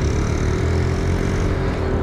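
Scooter riding along at steady speed: the engine runs evenly with one steady tone under heavy wind rumble on the microphone.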